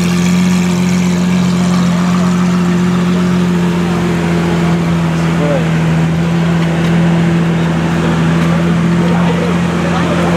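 Lamborghini Aventador's V12 engine idling steadily with an even, unchanging hum.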